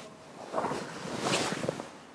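Cotton karate gi rustling as the arms sweep through a block. Two short swishes of cloth noise, about half a second in and again past halfway.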